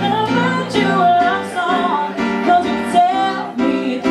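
A woman singing a pop song live, accompanying herself on a Schimmel grand piano with steady repeated chords.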